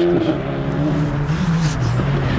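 Skoda Fabia RS Rally2's turbocharged four-cylinder engine running as the car is driven on the circuit, a steady engine note that shifts slightly in pitch about a second and a half in.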